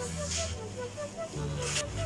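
Background music: a light melody of short repeated notes over sustained bass notes. Two short hissing rustles cut in, about a third of a second in and again near the end.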